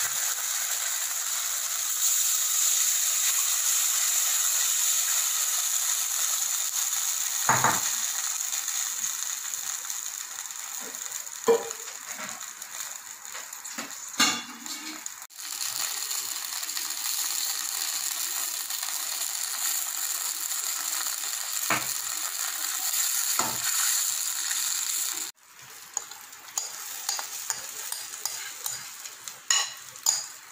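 Tamarind liquid sizzling steadily in a hot stainless steel pan, with a few sharp knocks of the steel slotted ladle against the pan. About 25 seconds in the sizzle drops away, followed by light clinks of a spoon against a bowl.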